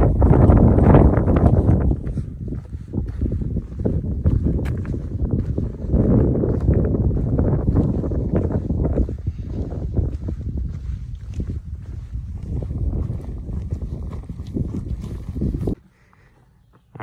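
Wind buffeting the camera's microphone: a loud, gusty low rumble that swells and dips, strongest at the start.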